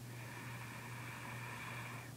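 Faint, steady scratching of a pencil sketching on paper laid on a clipboard, over a low steady electrical hum.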